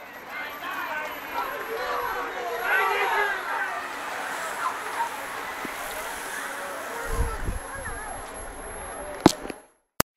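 Roadside spectators chattering and calling out while a bunch of racing cyclists rides past, with a low rumble about seven seconds in. A sharp click comes near the end, just before the sound briefly cuts out.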